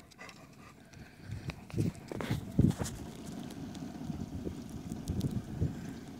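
A dog's paws knocking and scuffing on a wooden jetty and a small boat's deck as it climbs aboard: a few soft thumps about two seconds in, then a quicker run of them near the end.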